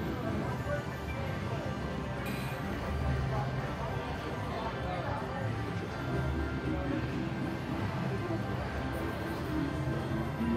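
Huff N' More Puff slot machine playing its game music and spin sounds as the reels turn, over a steady background of casino chatter.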